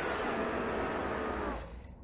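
Sound effect from an anime fight scene: a steady rushing noise with a low rumble underneath, fading away from about a second and a half in.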